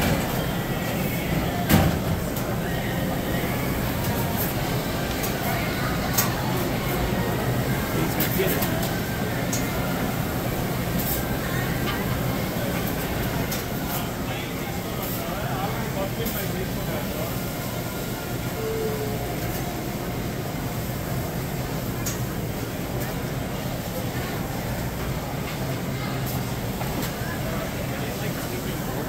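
Busy supermarket ambience: indistinct chatter of a crowd over a steady low hum, with a few sharp knocks, the loudest about two seconds in.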